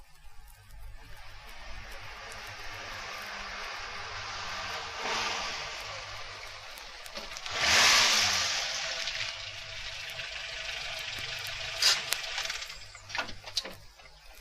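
A steady rushing noise from a sound-effects track. It swells about five seconds in and swells again, louder, about eight seconds in, then ends with a few sharp clicks near the end.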